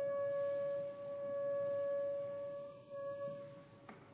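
A single long held note from a wind instrument in the chamber piece, soft and steady with few overtones, fading away near the end. A short soft click follows just before the end.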